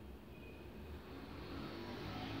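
Faint, steady low rumble of background noise, with no distinct event standing out.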